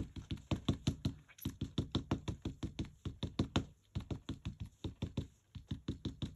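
An ink pad tapped rapidly against a rubber stamp mounted in a stamp press, about seven quick taps a second, inking the stamp. There are brief pauses about four and five and a half seconds in.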